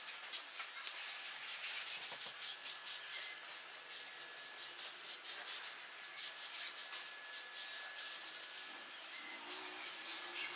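A cloth rubbing a finish onto a carved wooden sculpture: a continuous run of quick, scratchy wiping strokes.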